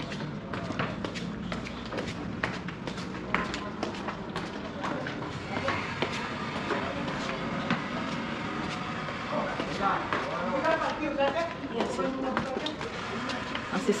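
Footsteps in sandals going down worn tiled stairs, a rapid run of steps, with indistinct voices behind them.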